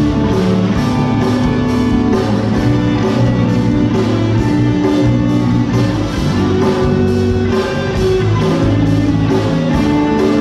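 Live rock band playing: electric guitars, bass and a drum kit, with a steady beat.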